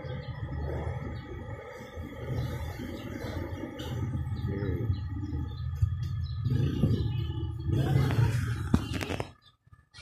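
A steady mechanical hum with a few steady whining tones above it, which cuts off near the end.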